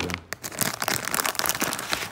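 Foil blind-bag packaging crinkling in a quick, irregular run of crackles as it is handled and the small figure is pulled out of it.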